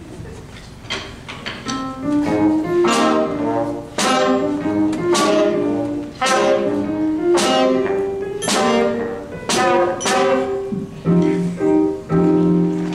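A school band playing an instrumental interlude, with saxophone and trombone carrying held notes over a strong accented beat about once a second.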